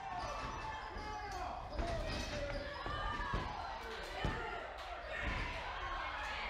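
Thuds on a wrestling ring's mat, a few of them sharp and loud, as bodies hit the canvas during a pin attempt. Shouting voices rise and fall around them.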